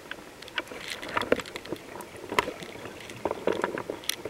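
Water moving around an underwater camera, with irregular clicks and knocks.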